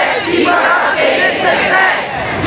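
Crowd of protesters shouting together, many voices overlapping.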